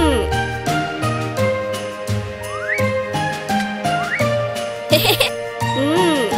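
Cartoon background music with a rhythmic bass line, and a bright tinkling ornament sound effect near the start and again at the end. In the middle are two short rising whistle-like slides.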